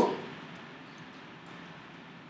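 Low, steady background hiss of room tone, with no distinct sound event standing out.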